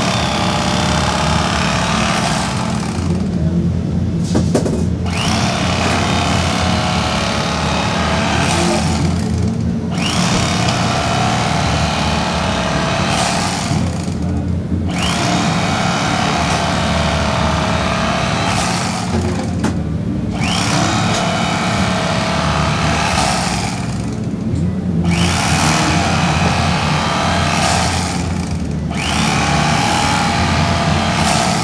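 Electric carving knife running steadily as it saws through a smoked beef brisket, its motor humming under a rasping cut. The cutting sound breaks off briefly about every five seconds, once per slice, about six times.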